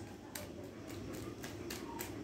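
A quiet pause: low steady room hum with a few faint, brief ticks scattered through it.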